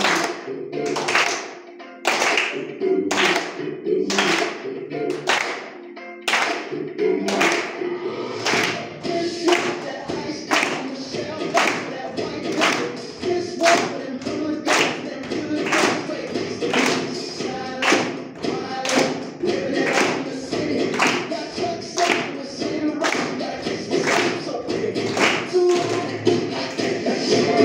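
Body percussion: a group of children clapping their hands in unison, about two claps a second, in time with a recorded song with singing.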